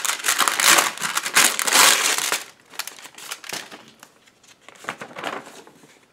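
Paper crinkling and rustling as a mail envelope is handled and opened by hand, loud and dense for the first two and a half seconds, then softer, intermittent rustles.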